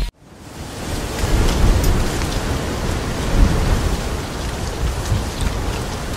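Steady rain, fading in over the first second and running on with a low rumble underneath.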